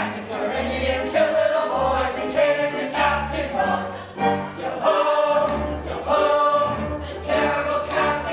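A stage-musical cast singing together as a chorus over instrumental accompaniment with a low bass line.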